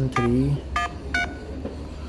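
Phone keypad dialing tones: two short touch-tone beeps a little under half a second apart as digits of a phone number are dialed.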